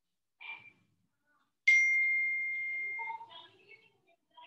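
A single bell-like ding: one clear high tone that starts suddenly about a second and a half in and rings and fades away over about a second and a half. There are faint small sounds before and after it.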